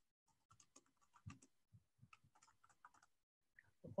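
Faint typing on a computer keyboard, irregular keystrokes and clicks.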